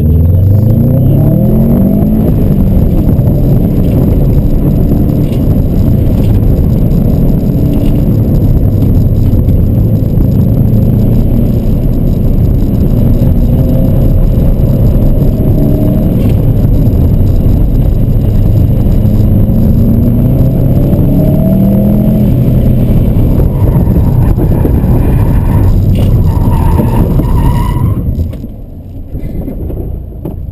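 Subaru WRX's turbocharged flat-four engine heard from inside the cabin, revving up and falling back again and again under hard driving through the course. Near the end come a few short high squeals, then the engine drops away to a much quieter running.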